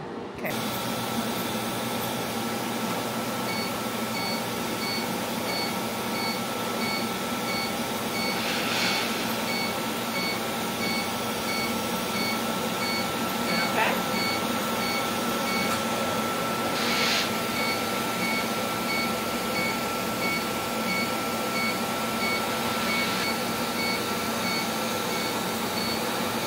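A laser hair removal machine running through a facial treatment: a steady rush of air from its hose and cooling, with rapid, regular beeping and a steady high tone over it.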